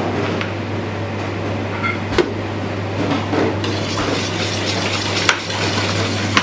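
Wire whisk stirring a liquid pink praline cream mixture in a stainless steel bowl as liquid cream is poured in, with a couple of sharp clinks of the whisk against the bowl. A steady low hum runs underneath.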